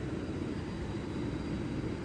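Steady background noise with no distinct events, its energy mostly low in pitch: the general ambience of a busy indoor venue.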